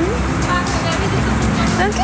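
Street traffic noise with a motor vehicle's engine running nearby, a steady low hum. A woman's drawn-out voice comes in near the end.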